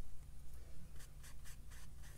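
Flat watercolor brush scrubbing in the palette's paint and brushing across cold-press paper: a quick run of short scratchy strokes.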